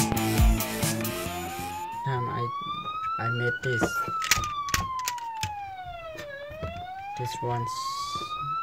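Toy police car's electronic siren sound module playing a wail, one tone gliding slowly up and down, each rise or fall taking about two and a half seconds. Frequent clicks and knocks from the toy being handled sound over it.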